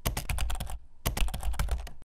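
Rapid computer-keyboard typing clicks, a sound effect. They run in two quick bursts with a brief easing just before a second in, then stop abruptly.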